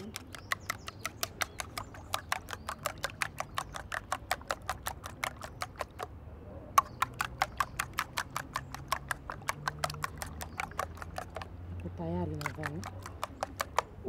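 Fork beating eggs in a plastic bowl: a fast, steady run of light clicks, about five a second, as the fork strikes the sides of the bowl, with a short pause about six seconds in.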